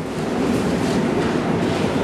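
Steady, even background noise of a large store, with no voices close by.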